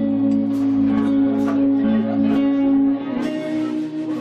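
Guitar played live in an instrumental passage: held chords ringing, strummed about once a second, changing chord about three seconds in.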